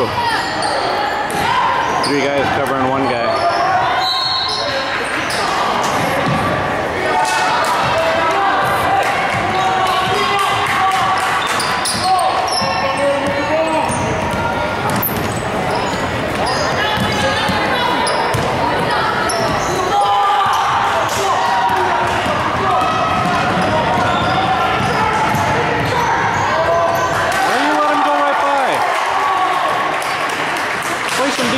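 A basketball bouncing on a hardwood gym floor during a youth game, with players, coaches and spectators calling out over it, echoing through the gymnasium.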